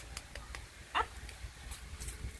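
Bulldog puppy giving one short, high whine about a second in, with a few faint clicks around it.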